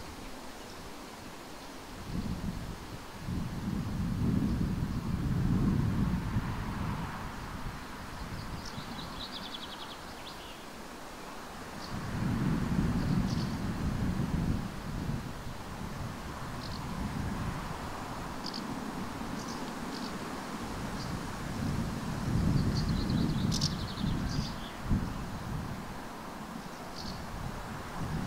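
Wind buffeting the microphone in three long low rumbling gusts, with small birds chirping and trilling faintly now and then.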